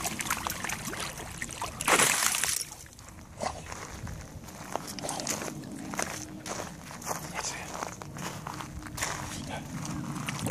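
A pit bull terrier wading in shallow lake water, splashing and sloshing as it dunks its head and paws at the bottom; a loud splash comes about two seconds in, followed by scattered smaller splashes and drips.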